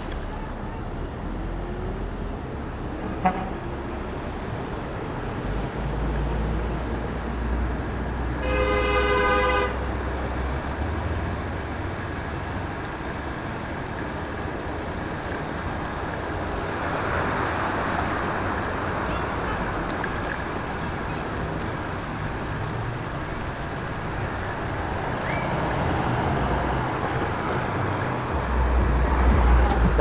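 Street traffic with wind rush on the microphone of a moving electric scooter. About eight seconds in, a vehicle horn sounds one steady honk of about a second and a half.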